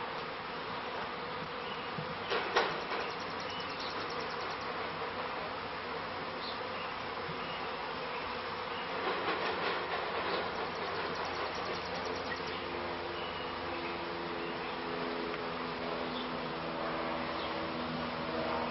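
A honeybee swarm in flight: a dense, steady buzz of many bees. In the last few seconds a clearer humming pitch comes through, and there is a brief knock about two seconds in.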